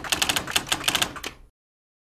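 Typewriter keys clacking in a quick run of about a dozen strokes, a typewriter sound effect that stops abruptly about one and a half seconds in.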